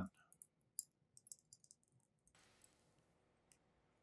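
Fly-tying thread wrapped tightly over craft foam on a hook, making faint, irregular high ticks and clicks as it is pulled under heavy tension.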